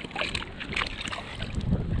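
A few light clicks and rustles of handling in the first second, then wind rumbling on the microphone.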